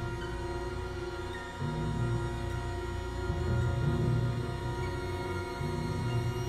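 Orchestral music: a long held note above low chords in the bass that shift and pulse, with a new low chord coming in about one and a half seconds in.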